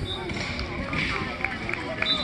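Chatter and calls of football players and coaches across a practice field, with a few short thuds in the second half.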